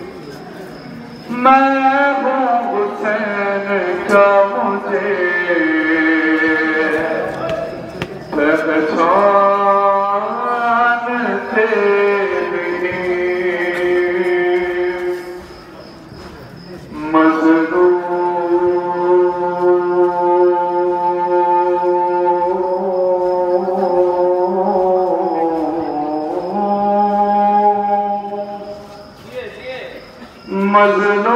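A man's voice singing a nauha, an Urdu lament, into a microphone, with long held notes that bend in pitch. There are two long phrases with a short break in the middle.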